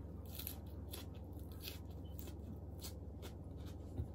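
Fresh lettuce leaves crunching as a lettuce wrap is bitten and chewed: an irregular run of crisp crackles, several a second, over a steady low hum.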